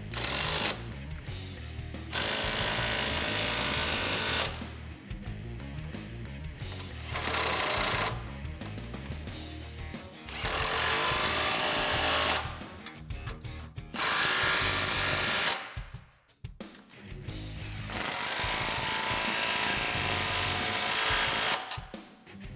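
Cordless impact wrench with a 15 mm socket tightening exhaust band clamps. It runs in about five short hammering bursts of one to two seconds each, with pauses between them.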